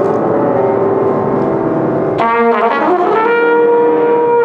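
Free-jazz duo of grand piano and trumpet. The piano plays a dense, busy texture, and about two seconds in the trumpet comes in strongly, slides up and then holds a long note.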